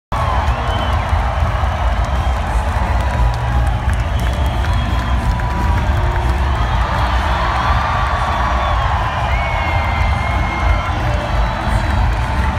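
Large arena crowd cheering and shouting steadily, with scattered high whoops, over music played through the public-address system.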